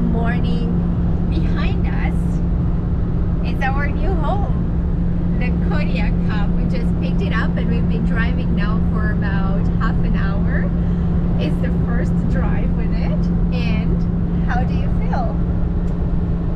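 Pickup truck's engine and road noise as heard inside the cab while towing a travel trailer: a steady low drone that does not change in pitch. The engine is running at fairly high revs under the trailer's weight.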